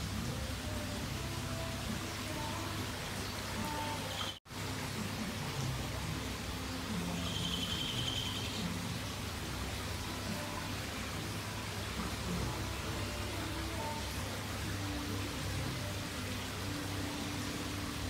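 Steady hiss of running, splashing water, broken by a brief drop-out about four seconds in.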